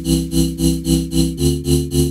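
Future-bass drop chords from two layered Serum synths, a square-wave chord layer and a noise layer, pulsing about four times a second, with the chord changing about 1.4 s in. The chords run through RC-20 cassette noise, whose Follow setting makes the hiss rise and fall with the chord pulses.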